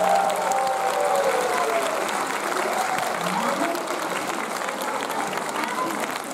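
Audience applauding with voices calling out over it, as the last of the dance music dies away at the start.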